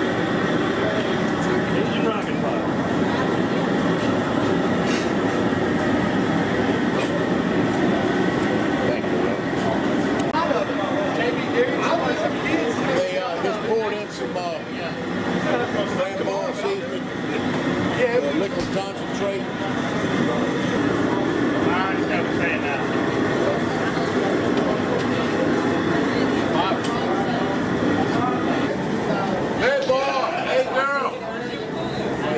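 Steady rushing noise of a high-pressure propane jet cooker burning under a large crawfish boil pot, with indistinct voices of people talking around it.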